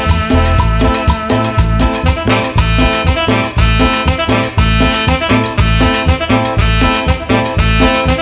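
Live tropical band playing an instrumental dance passage with a steady beat: synth keyboard, electric guitar, electric bass, drum kit and a metal güiro scraper.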